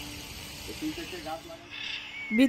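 Garden hose spray nozzle hissing as water jets out onto the garden beds, strongest near the end.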